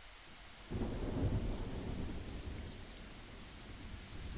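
Rumble of thunder rolling in suddenly about a second in and slowly dying away, over a steady hiss of rain.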